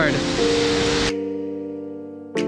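Heavy rain hissing steadily under soft background keyboard music. About a second in, the rain noise cuts off suddenly and only the sustained music notes remain, slowly fading.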